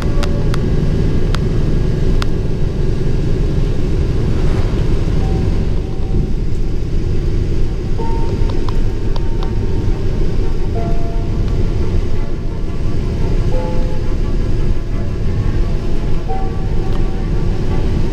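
Steady low rumble of a bus on the move, heard from inside the cabin, with a few faint clicks and faint music over it.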